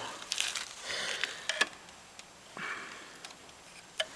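Short hisses of spray lubricant squirted through a straw onto a lawnmower wheel pivot, three brief bursts, with a few small clicks of handling; it is being applied to cure a squeak at the pivot.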